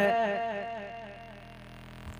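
A man's amplified voice dying away in echoes through the sound system, fading out over about a second and a half, then a faint low hum until he speaks again.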